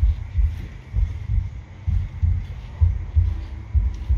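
Heartbeat sound effect: deep, low thuds in lub-dub pairs, about one pair a second, repeating steadily.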